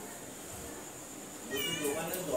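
Domestic cat meowing once, a short wavering call about a second and a half in.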